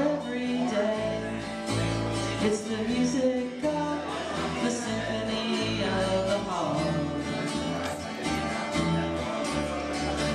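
Live acoustic song: a strummed acoustic guitar and an acoustic bass guitar playing under a bending melody line.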